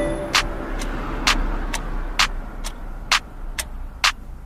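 The music cuts off right at the start, leaving a steady hiss and low rumble with a regular tick about twice a second, alternating stronger and weaker.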